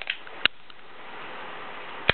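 A stun gun's rapid spark crackle across the spark gaps cuts off right at the start, followed by faint hiss and a single sharp snap about half a second in.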